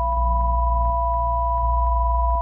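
Elektron Analog Four synthesizer drone: steady pure tones held over a deep bass tone, with faint clicks ticking at a quick, uneven pulse.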